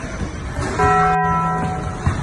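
A bell chime struck just under a second in, its several tones ringing for about a second, within an overlaid music track.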